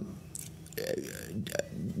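Quiet, low vocal sounds from a man, a few brief mumbled bits between words.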